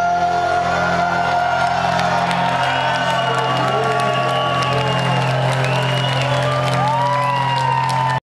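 A final electric guitar chord ringing out after the drums have stopped, with whoops and cheering from the audience.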